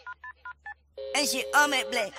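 About five quick touch-tone keypad beeps of a phone being dialed. From about a second in, a voice speaks over a steady tone.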